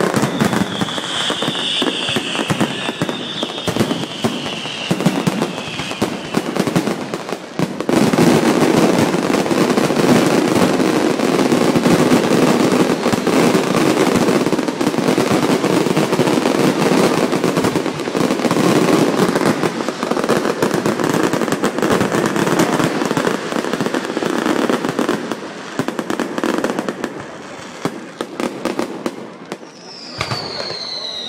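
Aerial fireworks display: a rapid, dense barrage of bangs and crackles as shells burst overhead, with a high whistle over the first few seconds. The barrage grows louder and denser from about eight seconds in and eases off near the end.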